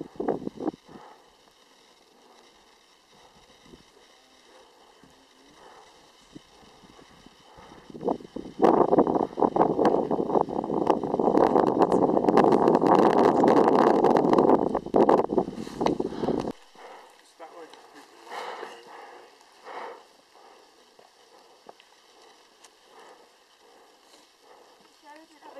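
People's voices talking. About eight seconds in, a loud stretch of rushing noise starts and runs for about eight seconds before cutting off suddenly. After that, quieter scattered voices and small sounds are heard.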